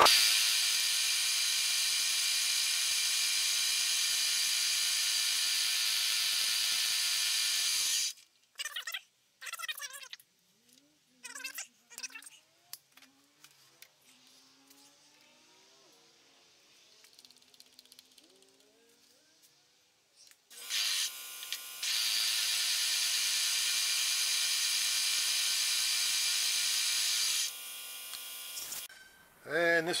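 Milling machine spindle running steadily while drilling a small connecting rod, a whine of many even tones, stopping about 8 seconds in. Then a quiet stretch of faint clicks and small squeaks, before the spindle runs again from about two-thirds of the way through and steps down just before the end.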